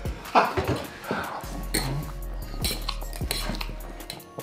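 Metal fork clinking and scraping against a metal baking tray as spaghetti is forked up and eaten, in scattered sharp clicks. Background music with a steady beat runs underneath.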